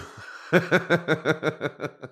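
A person laughing: a breathy start, then a quick run of ha-ha pulses, about seven a second, that grows fainter near the end.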